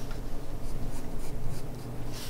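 Graphite pencil scratching on drawing paper in a run of short, quick strokes, sketching fur lines.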